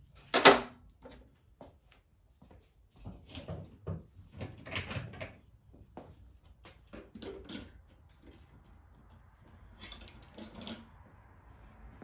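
A sharp knock about half a second in as a socket rail loaded with sockets is set down, then scattered clinks and rattles of metal sockets and a metal socket rail being handled, in two clusters.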